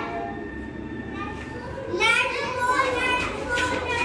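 A group of young children's voices singing or chanting together, softer at first and louder from about two seconds in.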